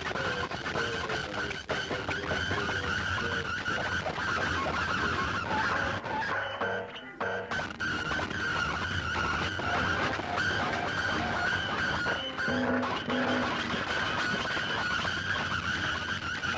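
Experimental noise music: a dense, rough, grinding texture under a steady high tone, thinning out briefly about seven seconds in.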